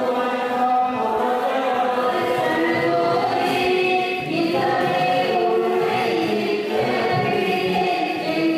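Group of voices singing a devotional chant together, with long held notes overlapping without a break.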